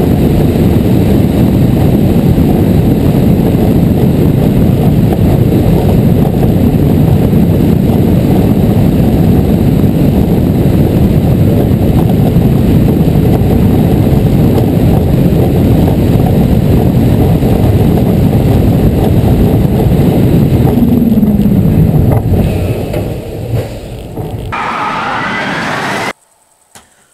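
Onboard audio of a high-speed, Ferrari-themed roller coaster ride: a loud, steady low rush of wind on the camera's microphone as the train races along the track. About three-quarters of the way through, a falling tone is heard and the rush drops in level, and near the end it gives way to a quieter, different sound as the shot changes.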